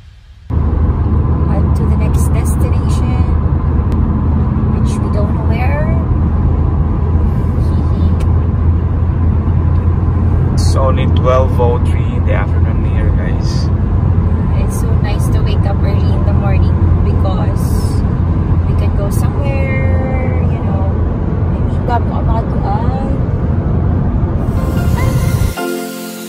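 Steady low rumble of a car cruising at highway speed, heard from inside the cabin: road and wind noise that cuts in abruptly about half a second in.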